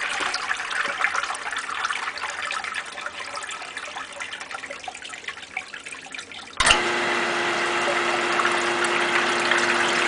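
Water splashing and trickling in a sump pit, dying away over the first six seconds. About six and a half seconds in, the electric motor of a pedestal sump pump switches on abruptly and runs with a steady hum, the water churning again as it pumps.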